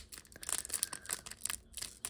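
Foil wrapper of a 2022 Panini Prizm basketball card pack crinkling and tearing as fingers pick at its top edge to open it: a run of small, irregular crackles.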